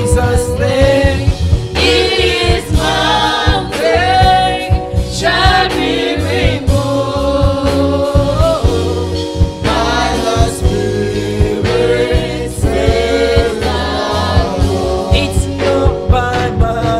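Gospel worship song: a man sings lead into a handheld microphone over instrumental accompaniment.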